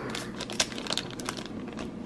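Foil wrapper of a Panini basketball card pack crinkling and tearing as it is pulled open, with a quick run of sharp crackles and one louder snap a little over half a second in.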